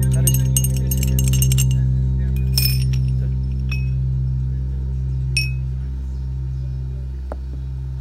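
Amplified bağlama's strings left ringing: a low, steady sustained tone that slowly fades, with light, chime-like clinks as the strings are touched, several in the first two seconds and a few single ones after.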